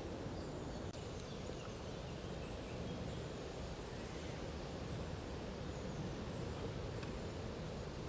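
Faint, steady outdoor background noise with a low rumble of wind.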